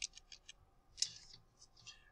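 Faint computer keyboard and mouse clicks, about eight short uneven clicks, as letters of a typo are deleted in a document.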